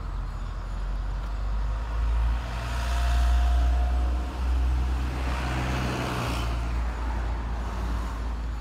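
Road traffic: a deep engine rumble with vehicles going by, swelling twice, about three and six seconds in.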